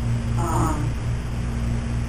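A steady low hum on the recording, with one brief high-pitched sound about half a second in that rises and then falls.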